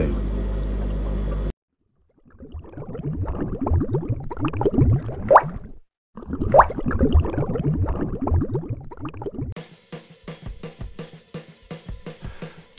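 A short intro jingle: music with drums and cymbals in two phrases split by a brief break, then a run of quick ticking hits near the end.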